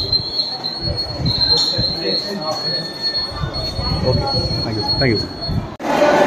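A high-pitched electronic buzzer sounding steadily, with a few brief dips, over low room murmur. It cuts off shortly before the end.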